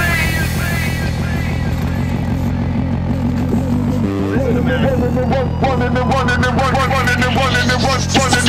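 Background music: a quieter stretch of the track with held bass notes and a rising sweep near the end.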